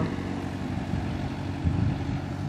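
Farm tractor engine running steadily some way off as the tractor drives away, a low drone that swells briefly near the end.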